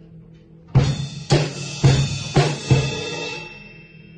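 Drum kit struck in a short fill: five hard hits about half a second apart, each with a deep thud, and a cymbal ringing on and fading after the last hit.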